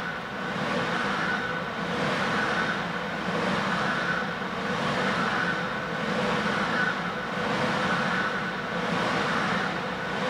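Vasa paddle ergometer's flywheel whirring as paddle strokes pull its cord, swelling and easing with each stroke about every second and a half.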